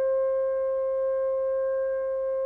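Classical music recording: a single long note held steadily on what sounds like a wind instrument, with a few clear overtones.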